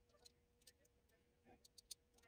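Near silence with a few faint ticks, clustered in the second half, from a rolled paper tube being handled and slid on a metal lathe mandrel, over a faint steady hum.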